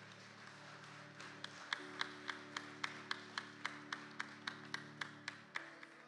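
Soft sustained chords from the worship band under a congregation's applause, with sharp claps in a steady beat, about four a second, from about a second and a half in until shortly before the end.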